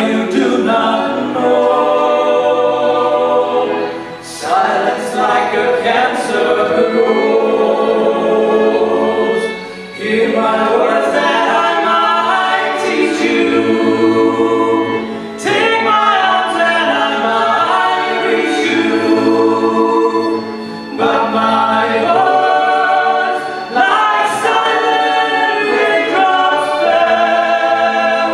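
Live ensemble music: several voices sing together in harmony over violins and other instruments. The singing comes in phrases of a few seconds, with brief breaths between them, over a steady held low note.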